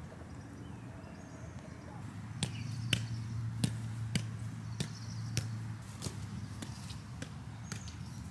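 A soccer ball juggled on bare feet: a string of light taps of foot on ball, irregularly spaced about one to two a second, starting about two seconds in, over a low steady hum.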